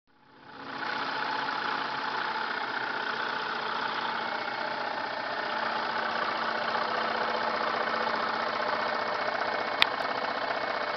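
Homemade scroll saw running steadily, its motor and reciprocating blade mechanism making an even mechanical drone that comes up over the first second. A single sharp click sounds just before the end.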